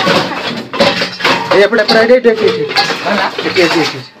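A bamboo stick knocking and rattling against metal pots and plastic containers as it pokes among them, with voices talking over it.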